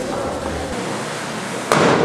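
A balloon bursting once with a sharp bang near the end, followed by a short echo.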